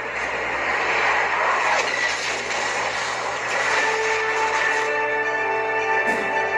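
Film soundtrack heard through a TV speaker: a steady rushing noise, with held musical notes coming in about four seconds in and carrying on to the end.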